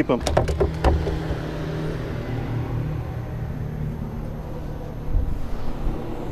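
A few sharp knocks and rattles in the first second as a fish is handled on a measuring board on a boat deck, over a steady low hum.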